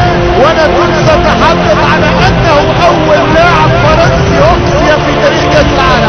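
Overlapping voices over background music with steady held tones.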